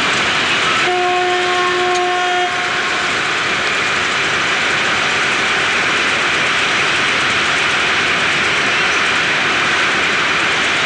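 Steady roar of street traffic, with a vehicle horn sounding once for about a second and a half near the start.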